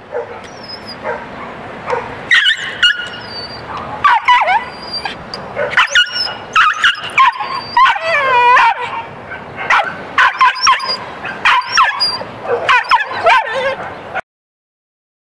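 A small brown dog barking, yelping and whining in quick high-pitched runs while it snarls with bared teeth at a person stepping up to it: the aggressive warning of a dog that won't let anyone touch it. One longer wavering whine comes a little past the middle.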